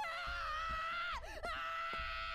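A high-pitched scream from an anime character on the episode's soundtrack, held long with a wavering pitch. It breaks in a swoop about a second in, then is held again. A faint steady tone sits beneath it.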